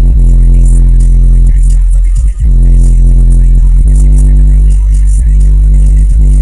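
Bass-heavy music played very loud through a car audio system with three 18-inch subwoofers, heard inside the cabin: long, sustained deep bass notes, with a brief break about two and a half seconds in.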